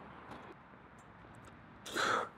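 Quiet background noise with a couple of faint ticks, then a short breathy rush of noise near the end.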